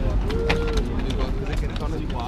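Brief, scattered voices of people standing close by, over a steady low rumble of outdoor city background.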